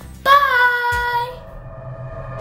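A girl's voice singing one held note for about a second, followed by steady music tones as an outro track begins.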